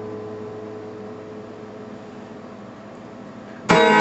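Acoustic guitar chord left ringing and slowly fading, then a sudden strummed chord near the end as the playing picks up again.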